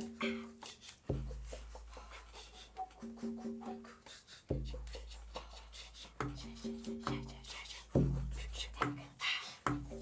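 Live group improvisation: sparse hand-drum strikes over deep held bass notes that enter every second or two, with short runs of repeated mid-pitched notes.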